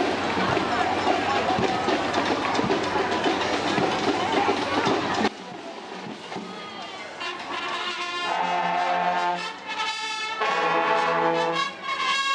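Busy crowd chatter and noise that cuts off abruptly about five seconds in. Then a marching brass band of trombones, trumpets and sousaphones plays held chords with short breaks, getting louder toward the end.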